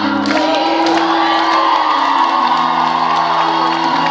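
Live band music with held keyboard chords that change every second or so, under an audience cheering and whooping.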